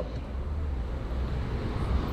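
A low, steady background rumble of an outdoor city space, with a faint even hiss above it.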